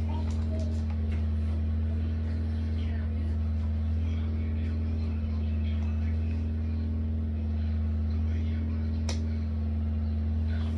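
A steady low hum throughout, under faint rustling and handling as items are packed into a canvas shoulder bag, with a sharp click about nine seconds in.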